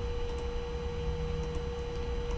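A steady single pure tone held at one pitch over a low background hum, with a few faint paired ticks.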